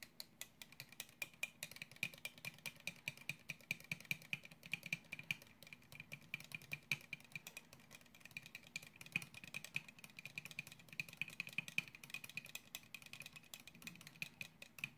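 A thin rod stirred quickly inside a plastic cup, ticking against its sides in a fast, even run of about six to seven light clicks a second.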